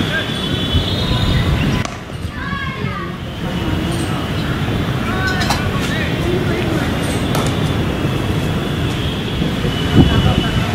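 Outdoor field sound at a cricket match: a steady low rumble with distant shouted voices of players calling out now and then, and a couple of sharp knocks in the second half.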